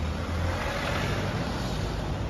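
A small cab-over light truck, a Hyundai Porter, drives past close by: a low engine rumble followed by tyre hiss on the wet road that swells and fades as it goes by.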